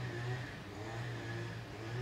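Steady engine hum in the background, its pitch wavering up and down slightly.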